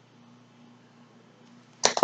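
Near silence with a faint steady low hum, then one short sharp click near the end.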